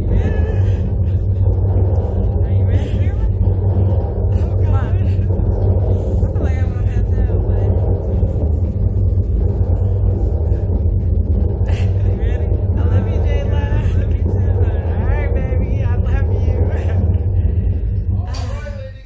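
Steady, loud low rumble of the Slingshot ride's machinery running, with a constant hum, while riders' voices are heard faintly over it.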